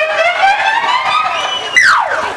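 A long pitched whooping sound that rises slowly, then glides quickly down near the end.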